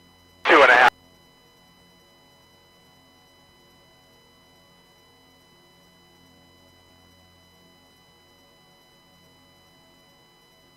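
A brief, loud burst of a voice over a radio about half a second in, switching on and off abruptly and lasting under half a second. Faint steady background music plays underneath.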